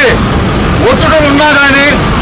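A person speaking at a press statement, over a steady low rumble.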